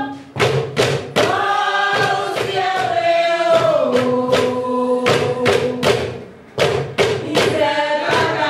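A group of women chanting a sung ritual song in unison, kept in time by wooden paddles struck against a clay jar at about two strikes a second.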